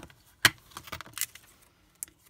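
Clear plastic stamp-set case snapping open with one sharp click about half a second in, followed by a few lighter plastic clicks as the clear photopolymer stamp sheet is handled.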